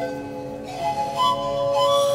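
Slow, calm instrumental Thai spa music in the Lanna style: long held notes, a little softer for the first second, then a melody of held tones entering about a second in.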